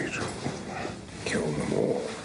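A man muttering to himself in a low, indistinct voice, picked up by a wireless microphone that he is wearing and that is still recording: 'What the hell did I do?'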